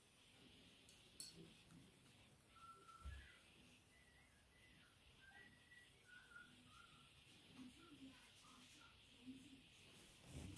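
Near silence with faint, short whistled notes scattered through the middle, and one soft thump about three seconds in.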